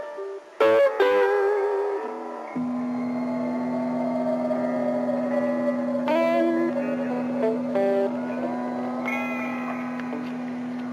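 Guitar music: a few sharp plucked notes, then a steady low note held under a slow melody that slides in pitch near the end.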